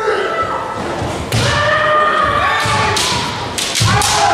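Kendo fighters' kiai: long, drawn-out shouts, the first starting about a second in and another just before the end. With them come sharp thuds and clacks of stamping feet and bamboo shinai strikes, the loudest just before the end.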